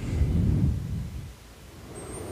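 A long, heavy exhale blown onto a close studio microphone, heard as a low rumble that fades out about a second and a half in.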